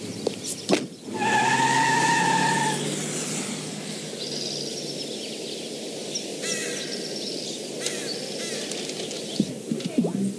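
A car pulling away, with a steady pitched tone lasting about a second and a half near the start. It is followed by outdoor ambience with birds chirping now and then.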